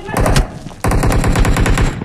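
Rapid automatic gunfire sound effect, as from a mobile shooting game, in two bursts: a short one at the start and a longer unbroken run from just under a second in.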